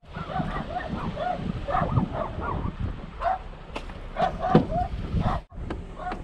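A dog barking repeatedly in short, quick barks, with wind rumbling on the microphone and a few sharp knocks in the second half.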